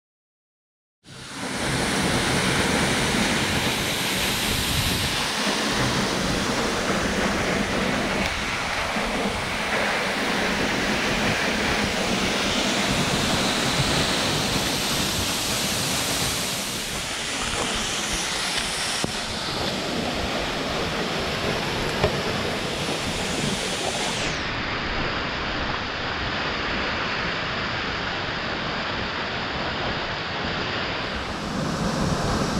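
Waterfall rushing steadily into a rock pool, close by. It starts abruptly about a second in, and the sound turns slightly duller near the end.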